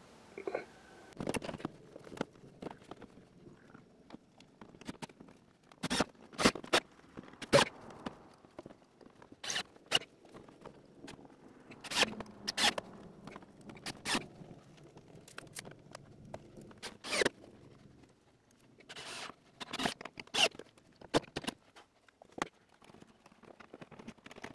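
Wooden framing lumber knocking and scraping as a frame is worked into place against a greenhouse's wooden structure: scattered sharp knocks, often two or three in quick succession, with soft rubbing and rustling between.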